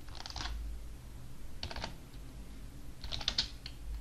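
Typing on a computer keyboard: three short runs of quiet keystrokes as a word is typed.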